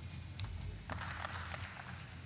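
Brief scattered clapping from the arena spectators, starting about a second in, over steady background music.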